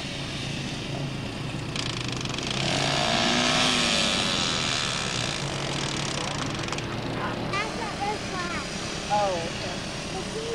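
Small quad (ATV) engine running as it rides across sand. The sound swells louder from about two seconds in, like the quad passing close, then eases off.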